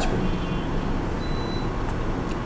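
Steady background noise, a low rumble with hiss, with a brief faint high-pitched tone a little over a second in.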